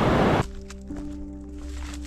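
Rushing water of a small cascading mountain stream, cut off abruptly about half a second in. Then soft background music with held notes and a few faint clicks.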